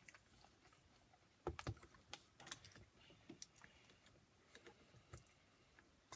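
Near silence broken by faint, scattered clicks and taps, like small handling noises close to the microphone, with a slightly louder cluster about a second and a half in.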